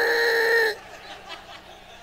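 A man's voice holding one steady vocal tone, imitating an adjustable bed's motor as it raises; it stops about three-quarters of a second in, leaving quiet room sound.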